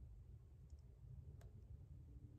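Near silence, with faint clicks of long acrylic nails tapping together while fingers work a contact lens into the eye: two tiny ticks less than a second in, then one sharper click past halfway.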